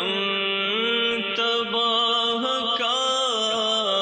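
A man's voice chanting a devotional supplication in long, drawn-out notes that slide and waver in pitch, with no percussion.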